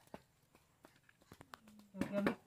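Near silence with a few faint, scattered clicks and taps as a motorcycle's plastic air-filter cover is picked up and fitted back against the bike.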